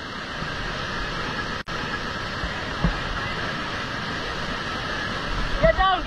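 Whitewater rapids rushing steadily around an inflatable raft, heard close up as an even wash of noise, with a momentary break in the sound about a second and a half in.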